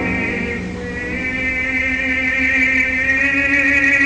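Operatic baritone voice holding one long sung note with a light vibrato, swelling slowly louder.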